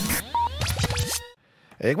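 Radio station ident jingle: electronic sweeps, short beeps and scratch effects that cut off about a second and a quarter in. A man's voice starts just before the end.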